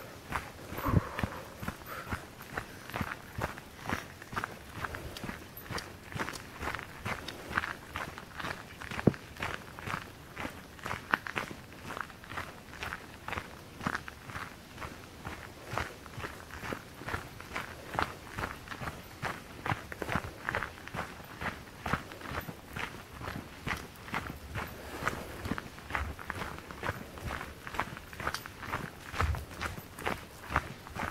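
Footsteps of a person walking at a steady pace on a gravel path, about two steps a second.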